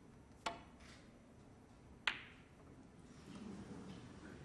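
A snooker shot: a sharp click as the cue tip strikes the cue ball, then about a second and a half later a louder, ringing click as the cue ball hits the red. A low murmur rises near the end.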